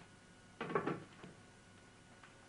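A brief clatter about half a second in, over quiet room tone.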